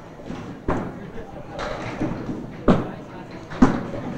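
Candlepin bowling alley ambience in a large hall: background chatter with three sharp, echoing knocks from the lanes. The last knock, near the end, is the loudest.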